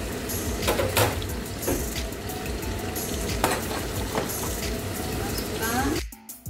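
Oil sizzling as food fries in pans on a stovetop, with a spatula stirring and scraping in a pan a few times.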